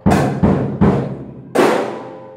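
Acoustic drum kit: three quick strokes with the bass drum, about 0.4 s apart, then a cymbal struck about a second and a half in that rings out and fades. This is the bass-drum-and-cymbal figure being taught.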